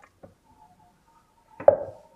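A few faint small clicks, then about a second and a half in a single sharp kitchen knock with a brief ring, a hard object knocking against the worktop.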